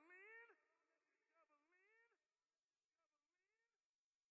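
A faint, short vocal cry that rises and then drops in pitch, repeated three or four times as a fading echo. Each repeat is thinner and quieter than the last, and the final one is barely audible.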